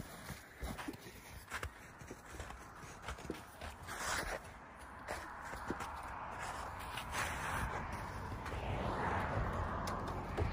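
Footsteps crunching irregularly on crusty spring snow. In the second half a steady rush builds and becomes the loudest sound near the end.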